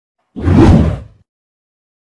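Whoosh sound effect for a video intro animation. It is one swell that comes in about a third of a second in, is heaviest at the low end, and fades out just past a second.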